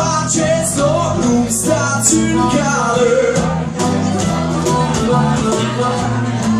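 Live acoustic rock band playing: strummed acoustic guitars and bass guitar over a cajon beat, with a harmonica wailing on top.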